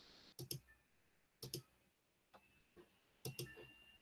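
Faint clicking at a computer: three quick pairs of light clicks, about a second or more apart, in an otherwise near-silent room.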